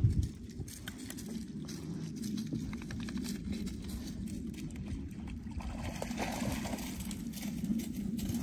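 A boat motor running steadily with a low, wavering rumble, and light water splashing over it. A single knock comes right at the start.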